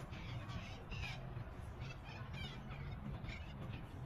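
Several short bird calls, crow-like caws, spaced out over about four seconds above a low steady rumble.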